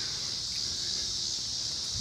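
A steady high-pitched chorus of insects droning without a break, with a faint low rustle from the phone being moved.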